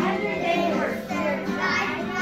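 A group of young children's voices singing and calling out together over backing music.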